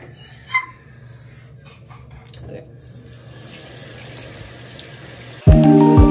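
Tap water running into a bathroom sink with a faint hiss and a couple of small clicks. About five and a half seconds in, background music cuts in suddenly with loud sustained chords.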